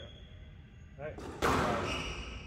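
A squash ball hit hard, a single sharp smack about one and a half seconds in that echoes around the large hall, just after a short call from a player.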